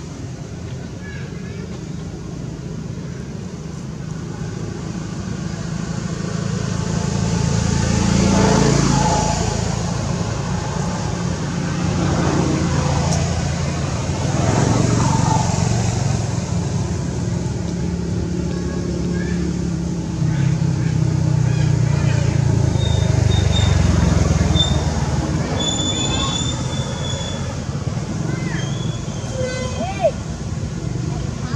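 Low rumble of passing vehicles, swelling as they go by about a quarter and half of the way through and again for a few seconds later on.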